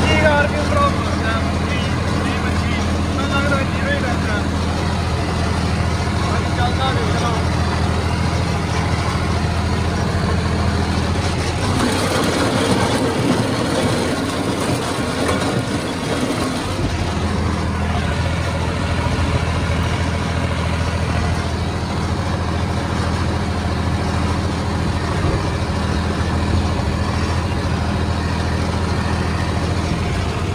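John Deere 5050D tractor's three-cylinder turbo diesel running steadily at working revs under the load of a 7-foot rotavator, its note holding without dropping. For a few seconds in the middle the engine gives way to the rushing noise of the rotavator's blades churning dry soil.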